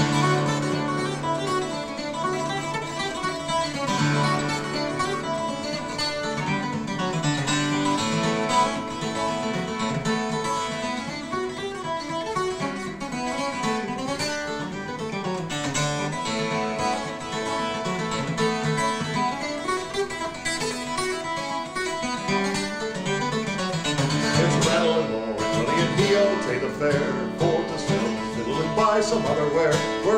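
Twelve-string acoustic guitar played solo with a pick: an instrumental break of a traditional folk song, a steady run of picked melody notes over ringing bass strings.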